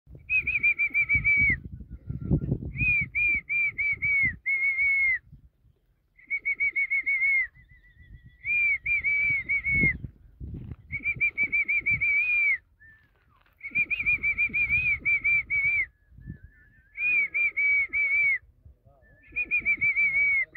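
A bird calling in short phrases of quick, high whistled notes, about seven notes a second. Each phrase lasts a second or so, often dips in pitch at its end, and repeats every couple of seconds. Dull low thuds and scuffs sound underneath at times.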